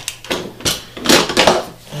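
A bar clamp being taken off and the freshly glued wooden box being handled on the workbench: a few sharp clicks and knocks, then a brief scraping rush about a second in.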